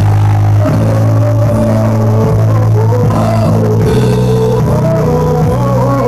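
Live gospel worship music from a church band: strong held low chords with a wavering melody line above them.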